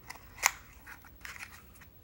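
Scissors cutting through a thin cardboard nail-polish box: one sharp snip about half a second in, followed by faint rustles of the card.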